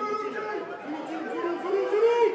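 Several voices shouting and calling over one another on a rugby pitch around a ruck, getting louder toward the end.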